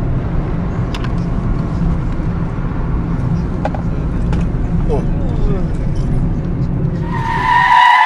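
Steady low rumble of a car driving, heard from inside the cabin. About seven seconds in it gives way to a loud, high tyre screech, as of a car skidding under hard braking.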